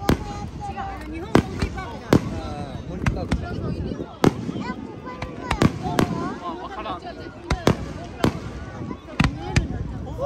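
Aerial firework shells bursting overhead: many sharp bangs at irregular intervals, sometimes two in quick succession.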